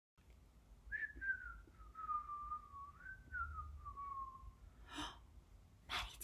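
A person whistling one slow, wavering note that slides downward over about four seconds, with a brief rise in the middle. A short breathy rush follows near the end.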